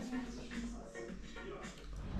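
Faint, indistinct speech with music beneath it.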